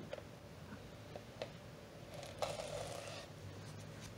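Faint handling noise: a few light clicks and taps and a short soft rub as a painted plastic armor piece and a cloth rag are handled.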